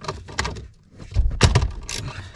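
Clicks and knocks of a ratchet and extension working a fastener up under a car's dashboard, with a louder thump in the second half.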